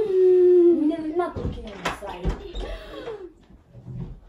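A young woman's loud, drawn-out wail of pretended menstrual-cramp pain, held on one pitch for almost a second, then breaking into shorter moaning, crying sounds that fade near the end.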